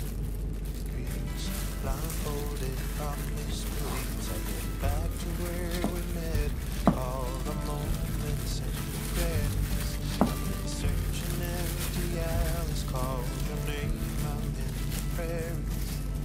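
Background music: a wavering melody over a steady low bass line, with a couple of short clicks.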